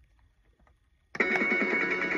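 B. Toys Woofer dog guitar's electronic speaker: a second of near silence with a few faint clicks, then a loud, steady electronic guitar chord starts suddenly just over a second in and holds, the opening of its next pre-recorded song.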